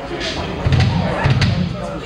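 Two low thumps from a rock band's stage gear, about half a second apart, over room chatter, just before the band starts playing.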